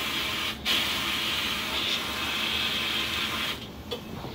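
Sandblast cabinet gun blasting a metal toy truck part: a loud, steady hiss of air and abrasive. It breaks off for a moment about half a second in, then runs on and stops shortly before the end, while the air line is giving trouble.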